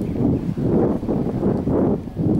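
Wind buffeting the microphone: a gusty rumble that swells and dips every half second or so.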